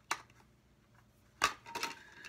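Plastic Blu-ray keep case being opened: a sharp plastic click at the start and a louder one about a second and a half in, then a few lighter clicks. A disc inside has come loose from its hub.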